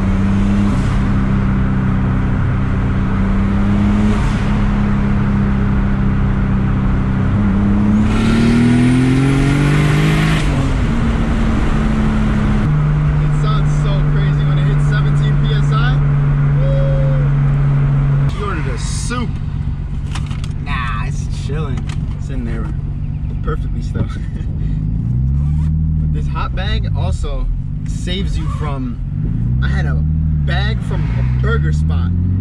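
Turbocharged BMW E30 with a swapped M52 inline-six, heard from inside the cabin on the move. It holds a steady note at first, climbs in pitch with a hiss about eight seconds in, then settles at a lower steady note. It eases off a little past halfway, and its pitch rises and falls in a few short swells near the end.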